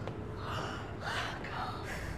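A child's breathy gasps, three short ones, while drinking a cold drink.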